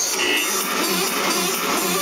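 Live electronic dance-rock music played through a large concert sound system, heard from the crowd. It is a breakdown passage: the bass and kick drum have dropped out, leaving synth tones in the middle range.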